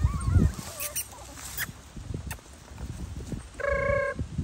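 Five-week-old schnoodle puppy whimpering in a high, wavering pitch at the start, with scattered light rustles and clicks as the puppies tumble in dry leaves and grass.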